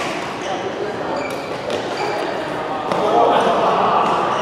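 Badminton rally in a large hall: rackets strike the shuttlecock with sharp clicks several times, and shoes give short squeaks on the court mat.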